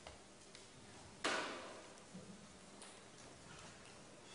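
Quiet classroom with a few faint small clicks and one sharp knock about a second in that dies away over about half a second.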